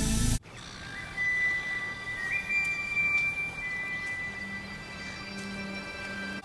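Soft background score music with long held high notes that step up in pitch once, joined by a low held note later. A louder passage cuts off abruptly about half a second in.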